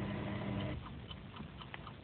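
Faint hiss with a few small, light clicks in the second half: a portable Sony player being handled just before it plays.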